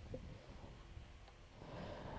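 Near silence: only a faint low background rumble, with no distinct sound of bat or crowd.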